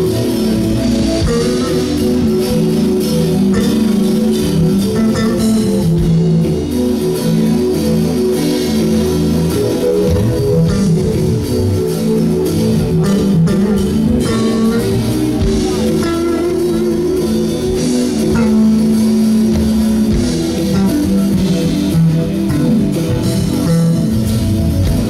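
Live jazz-funk band playing an up-tempo tune, led by electric bass guitar with drums, guitar and keyboards; the saxophone is not being played.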